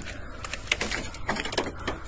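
Footsteps crunching through dry leaf litter and brushing past camouflage netting and branches: a string of irregular sharp crackles and rustles, thickest in the second half.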